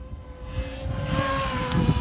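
E-flite Convergence VTOL model's electric motors and propellers whining as it makes a fast flyby in multi-rotor mode. The whine grows louder as it nears, drops slightly in pitch as it passes, and ends in a rush of noise as it goes by closest.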